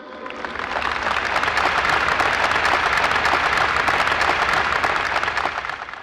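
Large audience applauding, building up over the first second and dying away near the end.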